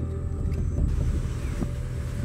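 Low, steady rumble of a car driving slowly, with road and engine noise heard from inside the vehicle and some wind on the microphone, plus a few faint ticks.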